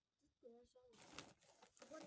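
A woven plastic sack rustling and crinkling as it is grabbed and lifted, starting about halfway through. A short low-pitched call comes just before it.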